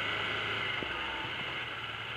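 Can-Am Commander 800 side-by-side's V-twin engine running with a low, steady hum as the vehicle rolls along, under an even hiss of wind and driving noise that eases off slightly toward the end.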